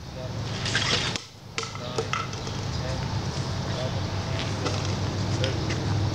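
Steady low rumble of a train still out of sight, slowly getting a little louder, with a few brief quiet voices and small ticks over it.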